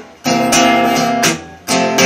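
Acoustic guitar strummed chords between sung lines. The playing stops short at the start and again about a second and a half in, then comes back in each time.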